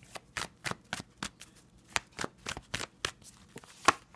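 A tarot deck being shuffled by hand: a quick run of sharp card slaps and riffles, about three or four a second, the loudest just before the end.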